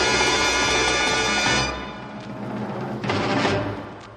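Orchestra of a 1962 film-musical soundtrack holding a loud full chord that breaks off about halfway through. A last accented chord with timpani follows near the end and dies away, closing the number.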